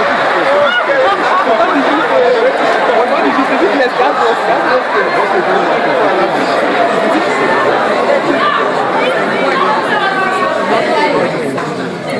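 Several voices talking at once in a steady babble of chatter, with no single voice standing out.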